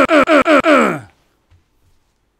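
A man's voice making a rapid stuttering "uh-uh-uh", about five short sounds a second, each dropping in pitch. It ends about a second in with one long groan falling low.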